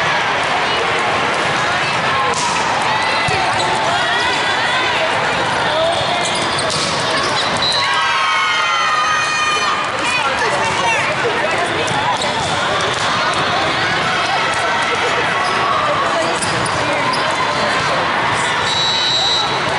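Busy indoor volleyball tournament hall: a constant mix of many voices from players and spectators on the courts, with volleyball strikes and bounces and sneaker squeaks on the sport-court floor, echoing in the large hall.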